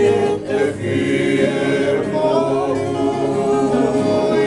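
A group of men singing a Tongan song together in several voice parts, with long held notes.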